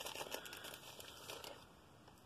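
Faint crinkling, rustling handling noise with small crackles, fading away over the last half second.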